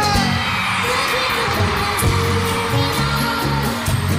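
Live bachata band playing in an arena, bass and percussion keeping a steady rhythm under crowd noise. A held sung note trails off just after the start.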